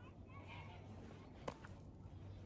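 Faint calls of domestic fowl, one about half a second in, over a low steady background hum. A single sharp click comes about a second and a half in.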